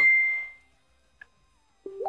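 A single electronic notification chime: one clear high tone that rings and fades out within about half a second.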